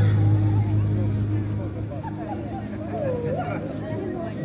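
The dance music stops at the start, leaving a low steady hum that fades out about halfway through, while people talk among themselves on the dance floor.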